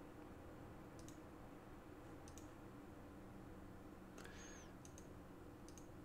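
A few faint computer mouse clicks, scattered over near-silent room tone.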